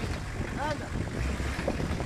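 Nissan Patrol 4x4's engine running low and slow under load as the truck crawls over boulders, with wind buffeting the microphone.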